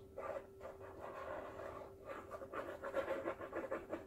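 Plastic squeeze bottle of acrylic paint being squeezed, paint and air sputtering from the nozzle in short, soft, irregular spurts.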